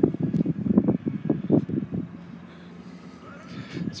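Irregular low thumps and rumble of a handheld camera being carried and handled, then a faint steady hum.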